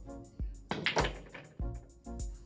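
Background music with a steady beat. About a second in, a short burst of sharp clicks from a hard-hit pool shot, as the cue strikes the cue ball and the cue ball hits the object ball.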